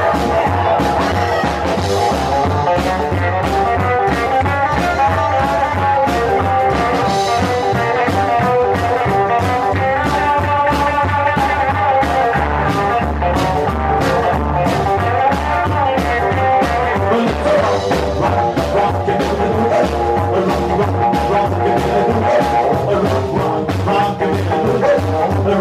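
Live rockabilly band playing a fast boogie: hollow-body electric guitar, upright double bass and a snare drum and cymbals struck with sticks, keeping a steady driving beat.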